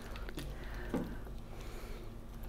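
Faint stirring of a wooden spoon through chunky vegetable soup in a pot, with a few soft clicks and squelches as peanut butter is worked into the hot liquid. A low steady hum runs underneath.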